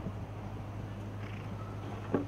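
A steady low hum under faint background noise, with no clear rhythm of hoofbeats.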